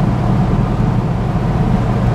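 A Ford Capri's engine running steadily at cruising speed, with tyre and road noise, heard from inside the cabin.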